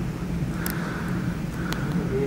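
Steady low hum, with two short faint clicks about a second apart.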